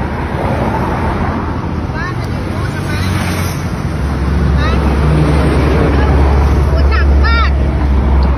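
Steady road traffic and engine rumble, with a deep low drone that swells about halfway through.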